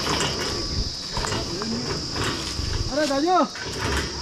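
Insects buzzing steadily at a high pitch, over rustling and knocking as someone makes their way down through forest undergrowth. A short raised voice is heard about three seconds in.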